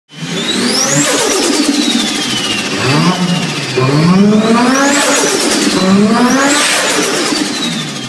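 A car engine revved repeatedly, its pitch climbing and dropping with each rev, with a high whine sweeping up and down about three times over it. It fades out near the end.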